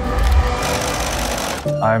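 Sewing machine running fast and continuously, stitching, until it stops just before the end.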